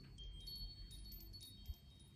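Faint chimes: several thin, high metallic tones starting one after another and ringing on.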